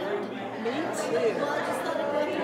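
Several people talking at once: overlapping, indistinct conversation and chatter.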